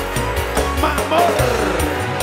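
Live dangdut band music with a steady deep bass and a regular beat, with a high line that slides up and down in pitch about a second in.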